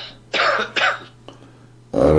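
A man coughing twice in quick succession, two short rough bursts about half a second in and just before the one-second mark.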